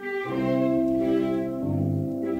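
Orchestral film score, with strings holding sustained chords that change about a quarter second in and again near the end.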